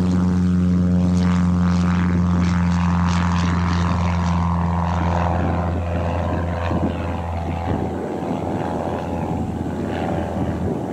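Aircraft engines running at an airfield: a steady low drone with many overtones that drops away about eight seconds in, with strong wind buffeting the microphone.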